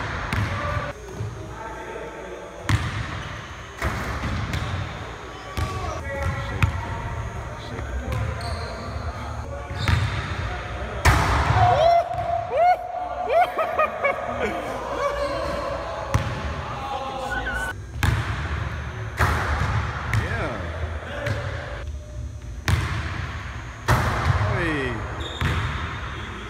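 Basketball bouncing with irregular hard thuds on a hardwood gym floor and against the rim and backboard during dunk attempts. Short shoe squeaks come about halfway through, with voices in the background.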